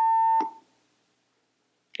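A steady electronic beep, one held tone with faint overtones, that cuts off suddenly about half a second in.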